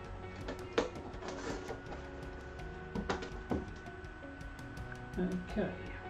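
Soft background music with long held tones, with a few sharp knocks and clicks of a microphone and its cardboard box being handled on a table, about one second in and twice near the middle.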